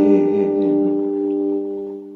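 Acoustic guitar chord left ringing on its own, its notes holding steady and slowly fading away.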